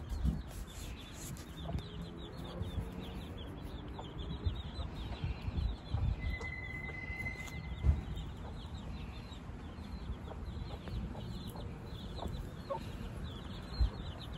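A brood of young chicks peeping constantly, many short high calls in quick succession, with a few lower clucks from the mother hen about two seconds in. Occasional low thumps.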